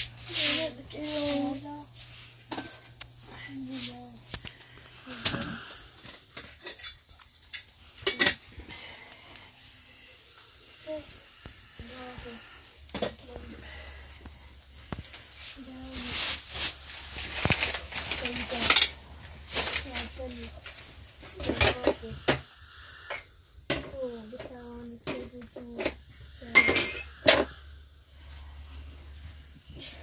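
Scattered clinks and knocks of metal dishes and pots being handled, with short bits of quiet talk in between.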